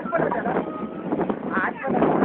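Unclear chatter of people's voices aboard a harbour boat, over a steady low rumble of the boat and wind on the microphone.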